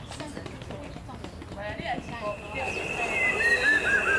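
People talking. About two-thirds of the way through, a high steady tone comes in and the overall sound grows louder.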